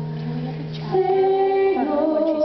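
A woman singing held notes in a musical-theatre belting style, a new sustained note starting about a second in, over a live band's accompaniment with a low sustained keyboard note.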